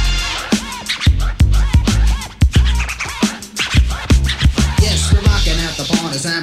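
Old-school hip hop dub mix: a drum beat and heavy bass with turntable scratching, repeated record-scratch swoops cutting across the beat.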